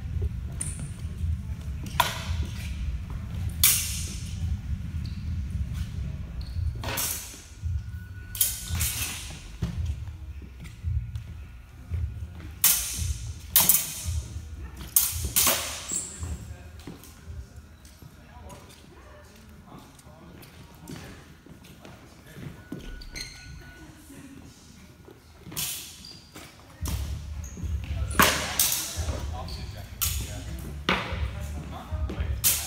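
Sword blades clashing and knocking against a shield and each other in a sparring exchange of sidesword and shield against rapier and dagger, as sharp strikes in clusters, some with a short metallic ring, echoing in a large hall. Footfalls on the wooden floor mix in, over a low rumble at the start and again near the end.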